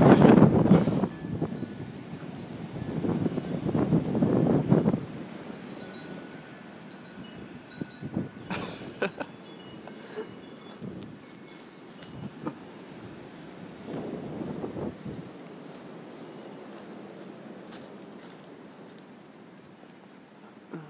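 Wind gusting over the phone's microphone as a low rush, strongest in the first second and again about three to five seconds in, with quieter stretches between that hold a few faint high ringing tones and light ticks.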